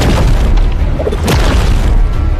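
Animated fight sound effects for a giant glowing seal hurled through the air: a deep, continuous booming rumble with falling whooshes near the start and again just over a second in, over soundtrack music.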